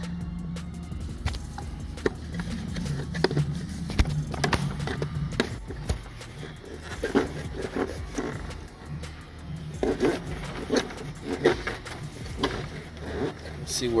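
Scraping and sharp clicks of a coiled steel wire-pulling tool being pushed through a rubber firewall grommet and rubbing on plastic trim. A steady low background music bed plays throughout.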